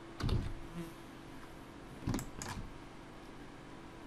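A few keystrokes on a computer keyboard: a soft knock just after the start and sharp clicks about two seconds in, over a faint steady hum.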